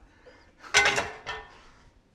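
A sudden clatter of kitchen gear about a second in, followed by a smaller knock about half a second later.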